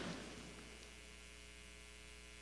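Faint, steady electrical mains hum in the microphone and recording chain: a low buzz of evenly spaced tones that holds without change. The room echo of the last spoken word fades away at the start.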